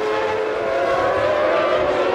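Racing car engines on the circuit: a steady high engine note that drifts slightly upward.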